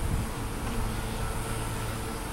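Steady low background hum with an even rush of noise, the kind of outdoor ambience heard near a road.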